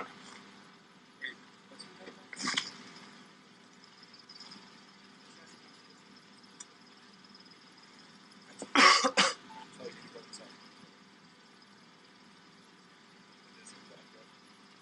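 A person coughing: a short cough about two and a half seconds in, and a louder double cough about nine seconds in, over a low steady hum.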